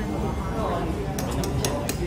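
Metal tongs clinking against a metal hot pot, a quick run of about five clinks in the second half.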